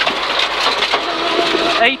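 Peugeot 306 rally car at speed on a gravel stage, heard from inside the roll-caged cabin: the engine is running hard under a dense rush of gravel and tyre noise, and its note holds steady from about halfway through.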